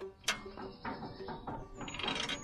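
A few short metallic clicks and knocks as a lifting chain is handled and positioned; the sharpest is about a quarter-second in.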